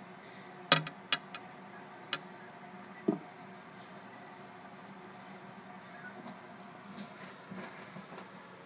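About five sharp clicks and knocks of handling inside a glass terrarium, the loudest less than a second in and the last about three seconds in, then only quiet room tone.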